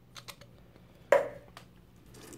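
Steel dial caliper and torn-down aluminium can being handled and set down on a tabletop: a few light clicks, then one sharper knock about a second in, followed by a couple of faint ticks.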